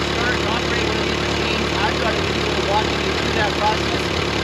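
Ford 8N's four-cylinder flathead engine idling steadily, with a man's voice talking over it.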